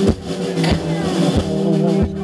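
Live band music: a drum kit keeps a steady beat, a stroke about every two-thirds of a second, over held guitar chords.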